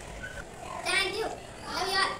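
Children's voices: two short, high-pitched vocal outbursts, one about a second in and another at the end, without clear words.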